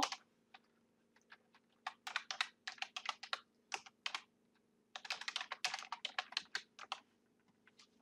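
Typing on a computer keyboard: a run of keystrokes about two seconds in, a few single taps, then a second quicker run from about five to seven seconds in.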